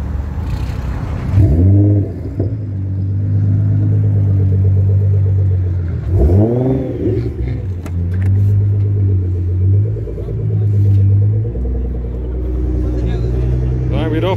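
Car engine idling with a deep, steady note, revved twice (about a second and a half in and again about six seconds in), each rev climbing sharply and falling back to idle.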